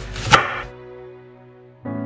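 One sharp knife chop through a green apple onto a wooden cutting board. Faint background music follows and comes in louder near the end.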